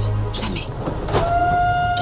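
A steam locomotive's whistle: one long, steady blast starting about a second in, over the film's background music.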